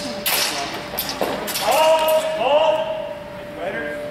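Longswords striking in a fencing exchange: a quick cluster of sharp hits in the first half second, then shouted calls from the officials.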